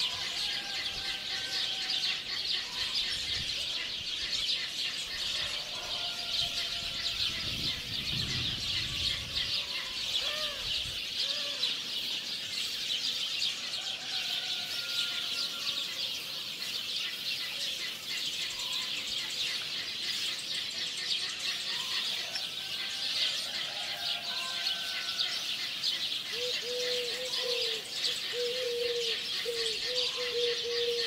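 Steady, dense chorus of many small birds chirping, with scattered short whistled calls over it and a quick run of repeated lower calls near the end.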